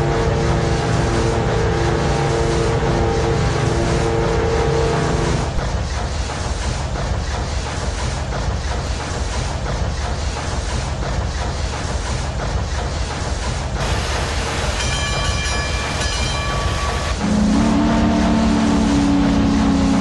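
Steam train sound effects: a continuous rhythmic chugging clatter with three long whistle blasts. The first is low and held through the first five seconds, a higher one comes around the fifteen-second mark, and a low one is held near the end.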